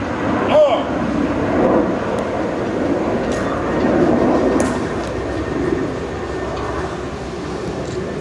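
Low voices of onlookers, one brief exclamation about half a second in, over a steady background rumble that swells slightly midway and then eases.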